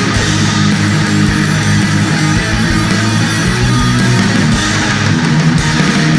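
Black thrash metal recording: distorted electric guitar riffing over bass guitar, loud and unbroken.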